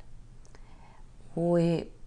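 A woman's voice: after a quiet pause, one short held hesitation sound at a steady pitch, about one and a half seconds in.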